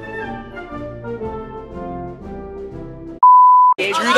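Instrumental background music with held notes, cut off near the end by a single loud, steady, high-pitched electronic beep about half a second long, a pure tone of the kind edited in to bleep out a word.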